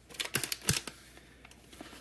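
Small items being handled on a desk: a quick run of light clicks and rustles in the first second, then faint handling noise.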